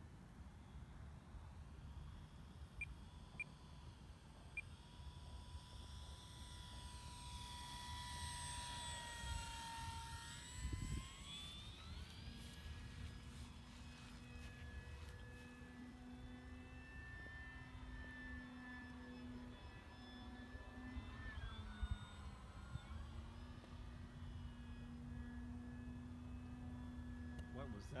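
Electric motor and propeller of an E-flite PT-17 RC biplane whining as it flies overhead. The pitch swoops down and back up about eight to twelve seconds in, then holds steady with a low hum, over a low rumble throughout.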